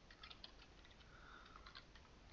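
Faint computer keyboard typing: a quick, irregular run of keystrokes.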